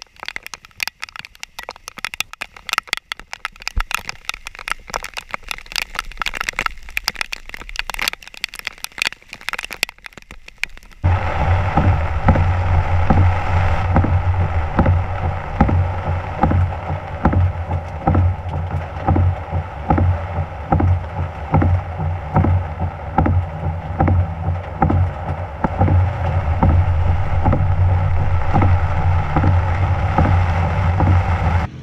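Heavy rain hitting the microphone as a dense, irregular crackle of drops. About eleven seconds in, it cuts suddenly to a louder steady hum carrying a regular beat about one and a half times a second.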